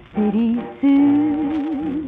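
A 1940s Teichiku 78 rpm shellac record playing a ryūkōka vocal: the singer sings a short note, then holds a long note with a wide vibrato over the band.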